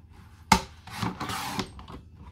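A sharp knock on a paper trimmer, then about a second of scraping as its sliding cutter is run along black cardstock, cutting it.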